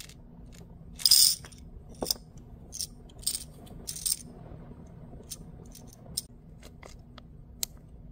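Small metal-framed rhinestone heart nail charms poured from a plastic sorting tray into a small clear plastic jar: a short rattling pour about a second in, then several sharp clinks over the next few seconds, and a few lighter ticks later.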